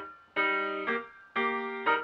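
Silent-film-style solo piano accompaniment: chords struck in a steady rhythm, a strong chord about once a second followed by a shorter one, each fading before the next.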